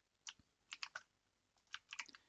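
Faint computer keyboard typing: a row of dashes keyed into a code comment, heard as three short runs of quick key clicks.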